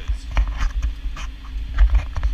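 Farm tractor engine running under load while pulling a ripper, heard inside the cab as a steady low rumble with scattered clicks and rattles.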